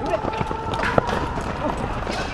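A group of people hurrying on foot, footsteps scuffing over grass and pavement while they carry someone between them, with voices around them. There is a sharp knock about a second in.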